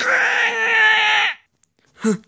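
A single loud wailing cry, about a second and a half long, holding a fairly steady pitch before it stops.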